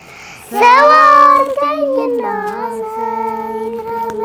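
Young girl singing into a close microphone. After a short breath she comes in loudly about half a second in, then holds long notes with a slight waver.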